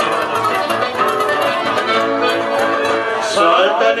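Live folk music over a PA: acoustic guitars and an accordion playing the instrumental introduction of a song, with a singing voice coming in near the end.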